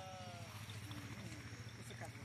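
The drawn-out end of a man's shouted call, its pitch sliding down and fading away within the first half second, then faint distant voices over a low steady hum.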